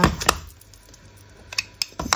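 Plastic Distress Oxide ink pad cases clacking as they are handled and a lid is pulled off, with two sharp clicks near the start and a few faint taps later.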